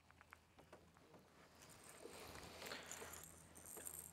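Near silence: faint outdoor background, with a few soft ticks early on and a faint hiss through the middle.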